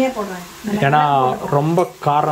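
A woman's voice talking over a faint sizzle of food frying in oil in a pan; the voice is the loudest sound throughout.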